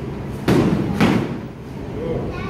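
Two loud thuds about half a second apart, each with a short echo: soft-kit padded weapon strikes landing on a shield.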